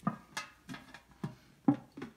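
A handful of light clicks and taps, about five in two seconds, from hands working at a freshly drilled hole in a tin paint-can lid.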